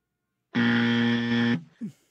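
Game-show wrong-answer buzzer sound effect: one flat, steady buzz lasting about a second that cuts off sharply, marking an incorrect answer.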